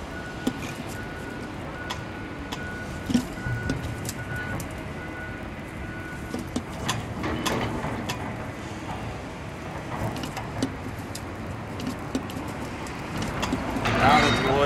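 Hand-lever bucket pump being worked to fill an excavator's final drive with gear oil: irregular clicks and clunks from the pump handle, over a steady low rumble. A faint, broken high tone runs through the first half.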